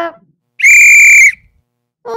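Referee's whistle blown once: a single steady, shrill blast a little under a second long, starting about half a second in.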